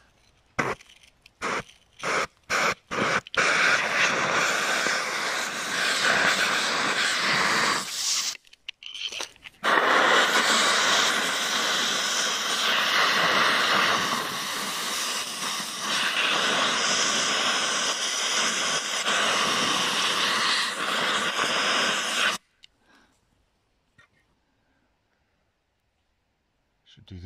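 Compressed-air blow gun hissing into a drilled hole in a stone wall, blowing out the drilling dust. A string of short blasts comes first, then long continuous blasts with a brief break about eight seconds in, until the air cuts off a few seconds before the end.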